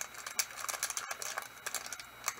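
A set of polyhedral dice clicking against one another as they are handled: a scatter of light, irregular clicks.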